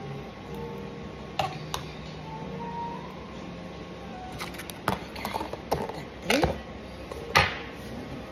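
Table knife spreading margarine on slices of white bread, with a few sharp taps and clicks of the knife against the margarine tub and the wooden chopping board, coming more often in the second half, the loudest near the end.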